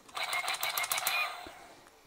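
The toy blaster's electronic sound card plays a rapid-fire blaster sound effect through its small built-in speaker: a burst of quick shots lasting about a second, then fading away. The speaker is weak and points down, so the sound is thin and a little muffled.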